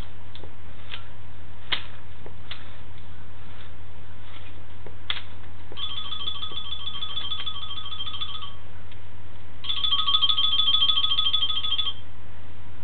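Phone ringtone ringing twice, a fast warbling two-tone ring starting about six seconds in and again near the end. Under it is a steady low hum with a few light clicks.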